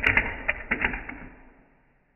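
A quick run of light clacks and taps as hands handle a fingerboard on a tabletop. The clacks come several in the first second, then die away.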